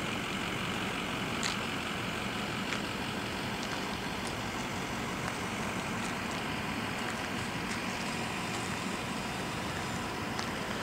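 Steady background noise: a low hum under a hiss, with a few faint clicks.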